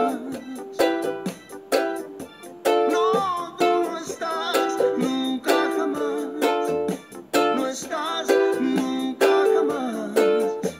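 Ukulele strummed in a steady down-up, down, down-up, down rhythm, moving between E minor and D minor chords.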